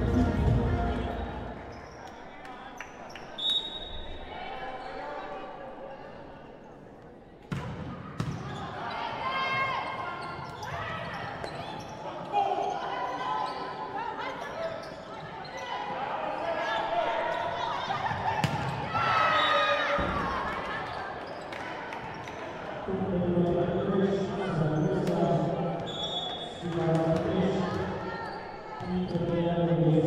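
Volleyball bounced and struck during a rally in a large sports hall, a few sharp ball hits ringing in the hall, with voices of players and spectators throughout.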